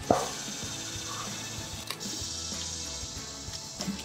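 Quiet background music over a faint steady hiss, with a short click right at the start.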